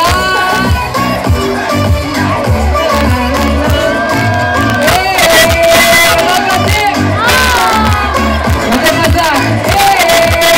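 Amplified live concert music with a steady heavy bass beat and a vocalist on the PA, over a crowd cheering. The cheering swells about halfway through.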